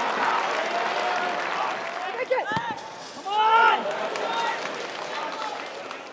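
Crowd noise from a small football crowd, with men shouting from the stands or pitch. The loudest shout comes about three seconds in.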